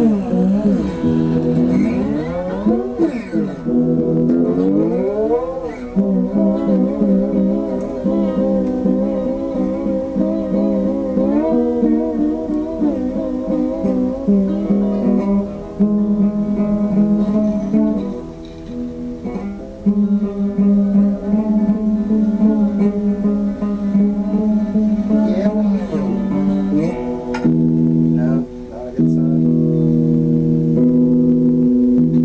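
Guitar music with long held notes, sliding and wavering in pitch during the first few seconds.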